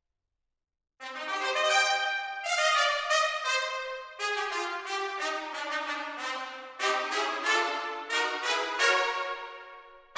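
Sampled trumpets from Spitfire Audio's Abbey Road One Thematic Trumpets library. After about a second of silence they play a quick run of short, detached notes, each ringing off in the hall's reverberation.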